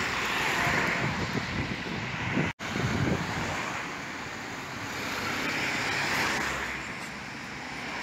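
Road traffic noise: cars and a truck passing close by, giving a steady mix of tyre and engine noise. The sound cuts out for an instant about two and a half seconds in.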